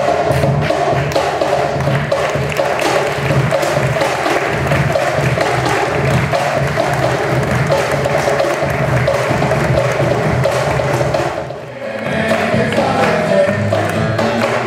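Live percussion playing a dense, fast, steady rhythm. It breaks off briefly near the end, and pitched music with guitar comes in.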